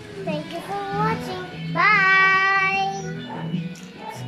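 A child singing: a few short sliding notes, then one long held note, over faint background music.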